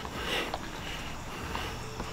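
A person sniffing close to the microphone, a short breathy hiss near the start, over low steady background noise with a couple of faint clicks.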